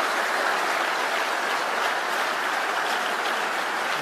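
Audience applause, steady and even.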